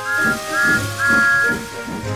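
Steam locomotive whistle sound effect blowing three times, two short blasts and then a longer one, over background music.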